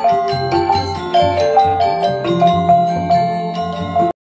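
Balinese gamelan gong ensemble playing: bronze metallophones and gong-chime kettles strike a quick, rhythmic melody over sustained low tones.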